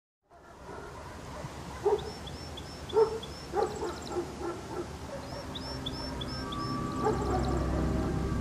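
A dog barking several times, loudest about two and three seconds in, over outdoor background noise, with two quick runs of high chirping calls. Music fades in near the end.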